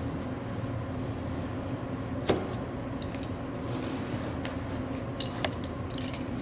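Box cutter slicing through a sheet of foam laid on cardboard, with a few sharp clicks from the blade and board, the loudest about two seconds in, over a steady background hum.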